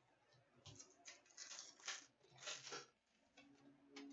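Faint flicking and rustling of hockey trading cards being shuffled through by hand, a handful of soft strokes in the first three seconds.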